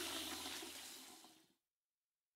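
Sound effect of running, splashing water standing for a car being washed, fading out over about a second and a half into dead silence.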